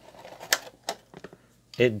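Stiff clear plastic packaging tray clicking and crackling as a desktop microphone on its stand is pulled out of it: a sharp click about half a second in, another near one second, then a few lighter ticks.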